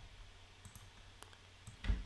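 A few faint clicks of a computer mouse over a low steady hum.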